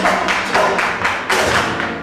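Live flamenco music with a quick run of sharp percussive strikes, several a second, over sustained instrumental notes.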